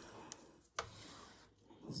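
Silicone spatula stirring a thick sour cream and mushroom sauce in a nonstick pot: faint scraping against the pot, with a light tap a little under a second in.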